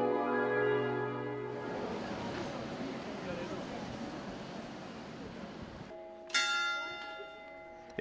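Church bell struck once about six seconds in, ringing with many overtones and dying away over about a second. Before it, a held musical chord fades out in the first second and a half into a steady noisy wash.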